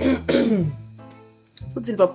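A woman clearing her throat with a falling vocal sound, and more short vocal sounds near the end, over background music with guitar.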